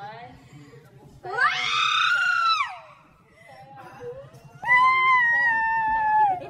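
A woman screaming twice: a shriek that rises and then falls about a second in, and a long, nearly level scream held from near the end.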